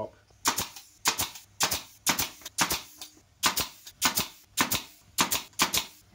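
A pin nailer firing pins to fix glued plywood packers down onto a panel: a quick, irregular run of sharp clicks, often in close pairs, about two to three a second.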